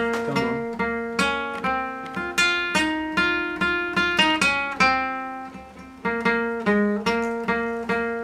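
Nylon-string classical guitar picked one note at a time with a plectrum: a slow, even melody over a recurring low note, played by a beginner after about an hour of learning. About five seconds in, one note is left to ring and fade before the picking starts again.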